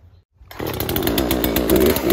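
Poulan Pro 18-inch two-stroke chainsaw running, starting about half a second in, its pitch rising and falling as it revs near the end.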